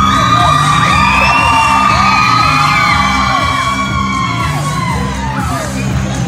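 Wrestling entrance music playing over a PA in a large hall, its bass line steady, while children in the crowd yell and whoop in long, high, gliding calls over it.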